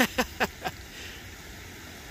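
A man's short laugh, a few quick breathy bursts falling in pitch, then a steady background hiss.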